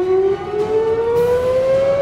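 Air-raid warning siren winding up: one steady tone rising slowly in pitch.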